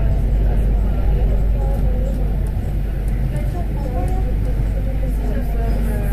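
Rubber-tyred MP05 Métro train running through the tunnel, heard from inside the front car as a loud, steady low rumble, with voices faintly under it.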